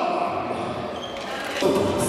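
Murmur echoing in a large hall, with a single thud about one and a half seconds in, after which background music comes in.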